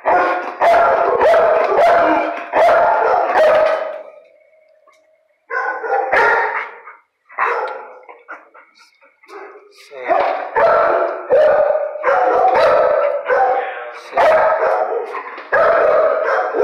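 Dogs barking in kennels, in quick runs of barks. One bark is drawn out into a short howl about four seconds in, and there is a quieter lull in the middle.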